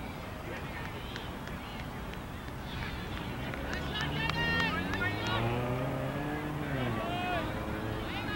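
A motor vehicle's engine goes by, its pitch rising slowly for about three seconds from midway, then dropping away. Distant voices and chatter sound throughout.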